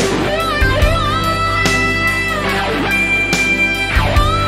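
Lead electric guitar playing an instrumental melody of long sustained notes with pitch bends and vibrato, over backing music with drum hits.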